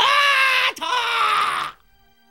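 A voice shouting a long, drawn-out cue, most likely the end of "music, start!", held in two stretches and breaking off just before the end. Faint music with steady held notes comes in as the shout stops.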